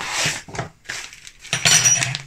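A paper bag of icing sugar rustling and crackling as it is handled and squeezed, in two bursts, one at the start and one near the end. The sugar inside has caked rock hard from the damp.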